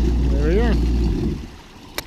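Yamaha WaveRunner jet ski engine idling, then shut off about a second and a half in, once the craft is up on the floating lift. A brief sound rising and falling in pitch comes partway through the idle.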